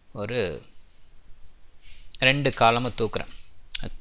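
A man's voice speaking in two short stretches, with a few sharp computer clicks near the end.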